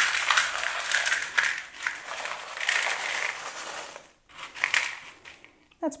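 Small gravel poured from a cup into a clear plastic tray, a steady rattle of many small stones lasting about four seconds, then a brief second rattle shortly before the end.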